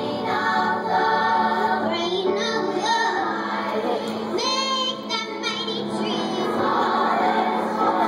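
Children's choir singing with musical accompaniment. About halfway through, a young girl's amplified solo voice comes to the front, singing with a wavering vibrato.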